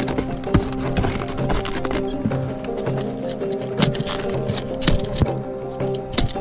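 Background music with steady tones over irregular knocks and crunches of ice axes being planted into steep, hard snow during a down-climb.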